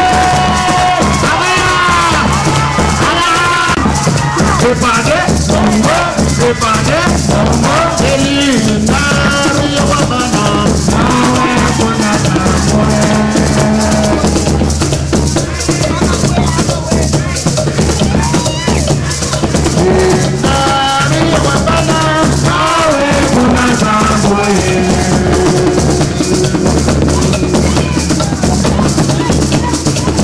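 Garifuna music played live: a man singing a melodic line into a microphone over maracas (sísira) shaken in a steady, even beat, with drums underneath.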